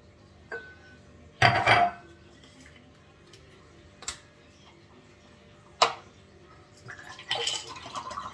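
A carton of almond milk handled and its plastic cap twisted open: a few scattered clicks, the sharpest about six seconds in, with a louder burst of handling noise about one and a half seconds in and rougher rustling near the end.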